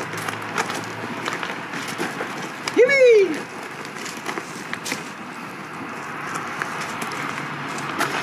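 Alcohol-soaked scrap wood in an oil drum catching fire from a handheld flame, with scattered small clicks over a steady hiss. About three seconds in, as it flares, a man gives one short exclamation that rises and then falls in pitch, the loudest sound here.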